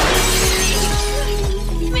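Glass smashing, a sudden crash followed by a spray of shards, over background music with a steady bass beat.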